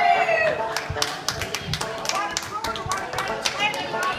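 Dancers' shoes tapping and scuffing irregularly on a wooden dance floor, with voices chattering underneath.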